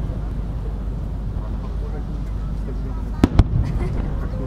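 Aerial firework shells bursting: two sharp bangs in quick succession about three seconds in, over steady background noise.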